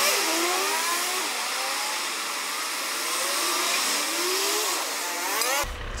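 Street traffic: car engines rising and falling in pitch as they accelerate and pass, over a steady hiss, thin with no low rumble. It cuts off suddenly near the end.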